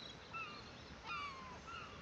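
Faint seabird calls, about three short squawks, each falling in pitch, over a soft steady hiss.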